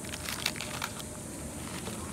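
Crisp crackling and crunching as a freeze-dried astronaut ice cream sandwich is bitten from its foil wrapper, the wrapper crinkling. There is a quick cluster of sharp cracks in the first second, then only a steady background hiss.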